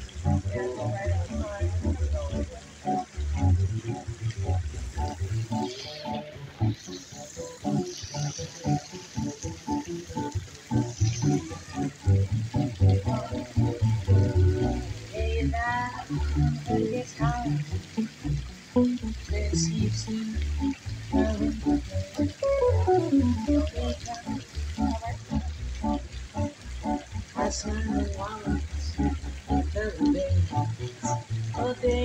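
Live band music: a plucked upright bass and an electric guitar playing an instrumental passage of quick notes, with no words sung.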